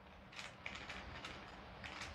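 Faint rustling of fabric being handled on a tabletop, with a few soft brushes in the first second.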